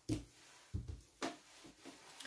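Plastic bottles and grocery items handled and set down on a table: two dull thumps, then a sharp click.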